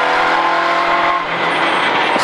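Citroën Saxo rally car's four-cylinder engine pulling hard at a steady pitch, heard from inside the cabin; a little over a second in the note eases off into road and engine noise.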